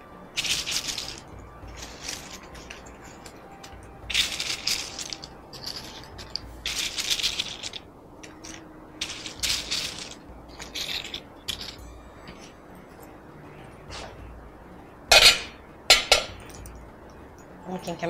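Crisp fried bread pieces rustling and crackling against each other and a paper napkin as they are picked from a plate and placed around a bread bowl, in short bursts every second or two. Two louder clatters come near the end.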